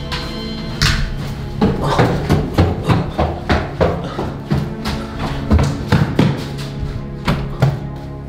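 Hurried footsteps on stairs, about two to three steps a second, over a steady background music drone.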